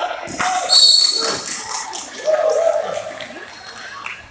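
Game sounds in a large, echoing gym during a youth basketball game: spectators talking and shouting, a ball bouncing on the hardwood court, and a loud, high, sharp squeak about a second in.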